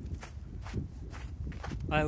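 Footsteps of a person walking on glacier snow, about two steps a second. A man's voice starts just before the end.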